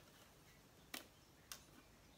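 Near silence broken by two light clicks about half a second apart, from hands handling a clear plastic container packed with moss.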